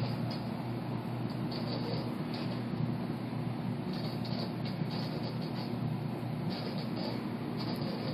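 Steady hum and hiss of aquarium equipment, a filter or pump motor running, with an even low drone throughout.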